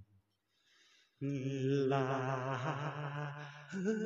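A man singing unaccompanied, holding long notes with a wavering vibrato. The singing starts about a second in after a short silence, and a second held note begins near the end.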